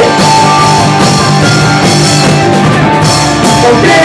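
Live rock band playing loudly: electric guitars and drum kit in an instrumental stretch without vocals.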